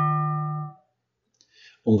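Synthesized struck metal plate from a finite-difference physical model, ringing with a set of steady partials, the lowest near 150 Hz, and decaying. About three quarters of a second in, the upper partials die away first and then the whole tone is damped out: regional damping with mass loading is pressed onto the plate, which pushes its partials down a little.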